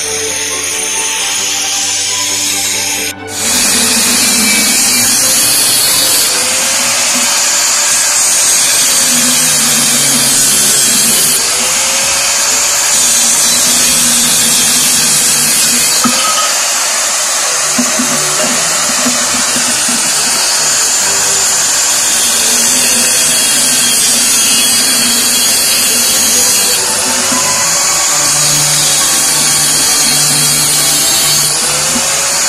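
Electric angle grinder with a thin cut-off disc cutting through square steel tubing, a steady loud whine-and-hiss, with background music underneath. The music plays alone for the first three seconds, and the grinding comes in after a sudden break.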